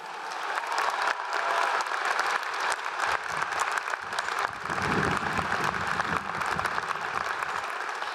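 Large crowd applauding in a stadium, a dense patter of many hands that swells over the first second and then holds steady. A low rumble sits under it around the middle.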